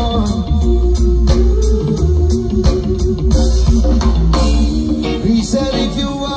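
Live reggae band playing, with a heavy bass line, guitar and a steady drum beat.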